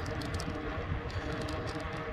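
Steady outdoor background noise with an uneven low rumble of wind on a handheld phone's microphone and a few faint light ticks.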